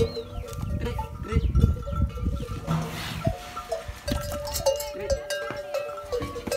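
Camels drinking at a water trough: low rumbling sounds in the first two seconds and a short splashing burst about three seconds in, over a run of held ringing tones that change pitch in steps.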